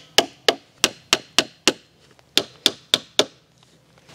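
Hammer driving plastic cap nails through 6 mil plastic sheeting into a wooden skid: quick, sharp strikes about three a second, six in a row, a short pause about two seconds in, then four more before the strikes stop.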